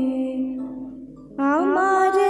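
A woman singing into a stage microphone. A long held note fades away, and about one and a half seconds in she starts a new phrase, sliding up into a higher sustained note.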